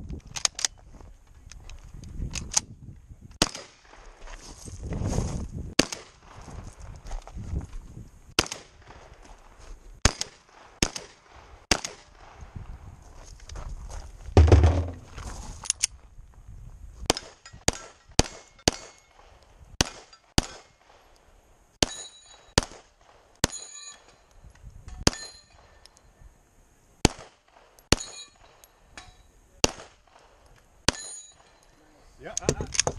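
Semi-automatic pistol firing a long string of shots at steel targets, the shots spaced out at first and coming quicker from about halfway, with the steel plates ringing briefly after some of the hits. A heavy low thump about halfway through is the loudest sound.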